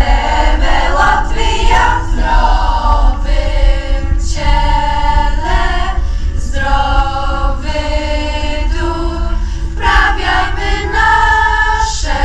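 A large youth choir of mixed voices singing a song together, with several long held notes between shorter phrases.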